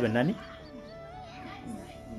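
Background music with a steady held melody line, opening with a brief loud voiced cry that bends in pitch and ends about a third of a second in.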